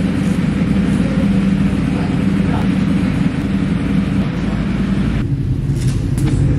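An engine running steadily with a loud, even drone; about five seconds in the higher part of the sound drops away, leaving a lower hum.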